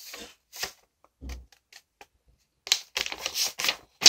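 A square of origami paper being folded and creased by hand: a few short crackles in the first half, a pause, then a quick run of paper crackles near the end.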